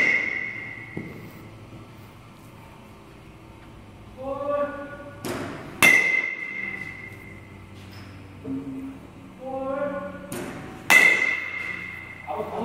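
A metal baseball bat striking balls in an indoor batting cage: three hits about five seconds apart, one right at the start, one about six seconds in and one near the end. Each hit is a pair of sharp knocks half a second apart, the second followed by a ringing metallic ping lasting about a second.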